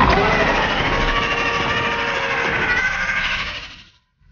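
Film sound-effect mix of a giant python attack: a loud, dense rumbling roar with men's frightened cries over it, fading away in the last second.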